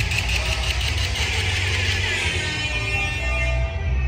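Bass-heavy hip-hop beat playing with no rapping over it, a steady deep bass under a bright, hissy upper layer.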